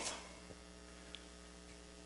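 Faint, steady electrical mains hum, a low buzz, with one small tick just past a second in.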